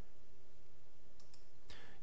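A few quick, faint computer mouse clicks a little over a second in, heard over a steady low electrical hum from the recording setup.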